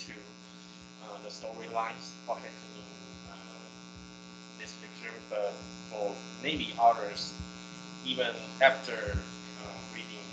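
A student speaking over an online-meeting audio link, the voice thin and muffled, with a steady electrical buzz or hum running under it.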